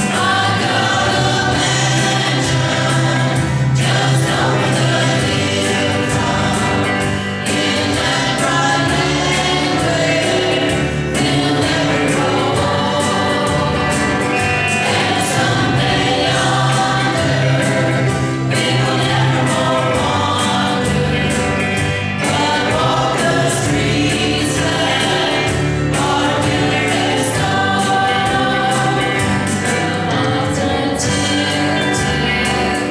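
Live gospel song: a group of singers in harmony backed by a small band with guitars, keyboard and drums.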